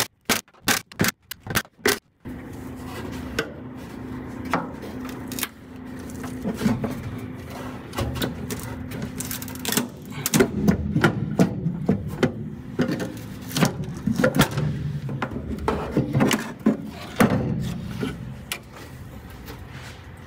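A cordless electric ratchet running in a quick series of short bursts on the nuts of the Sprite's pedal box. Then comes a long stretch of metal scraping, rattling and knocking as the pedal assembly and its cables are worked loose from the bulkhead.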